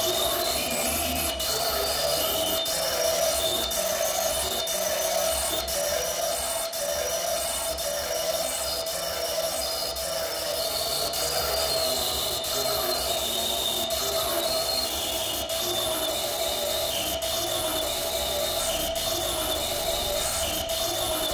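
Live-coded electronic music: a steady mid-pitched drone with scattered short, high chirping blips over it, and faint clicks recurring about once a second.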